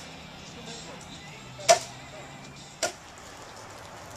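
Two sharp knocks a little over a second apart, from workers fastening parts onto wooden deck framing, over a faint steady hum.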